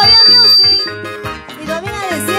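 Live band music with a steady bass rhythm, with a loud, shrill, steady high tone over it for about the first second; the music dips in loudness just past the middle.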